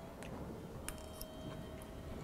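A few faint, light clicks from a metal fork over a plate while eating, over quiet room tone.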